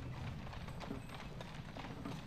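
Hooves of the caisson team's horses clip-clopping on a paved road: quiet, irregular hoof strikes.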